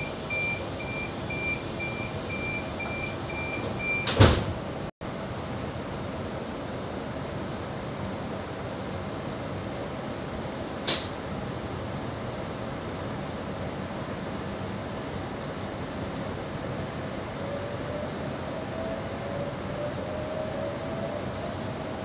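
Door-closing warning beeps on a Sydney Trains H-set (OSCAR) electric train, a rapid high beeping for about three seconds, then the passenger doors shut with a loud thud about four seconds in. A sharp click follows about eleven seconds in, then the carriage's steady running noise with a faint rising whine near the end as the train gathers speed.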